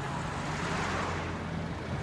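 Road traffic on a multi-lane city street: a steady hum of car engines and tyres, swelling about a second in as a vehicle passes.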